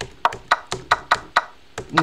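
Chess.com's wooden piece-move sound effects, about ten quick clicks in a row as the game's moves are stepped through one after another, with a short pause before the last one.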